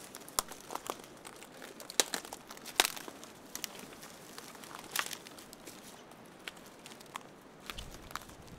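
Dry twigs and brush crackling and snapping as someone pushes through dense undergrowth, in irregular sharp snaps, the loudest about two, three and five seconds in.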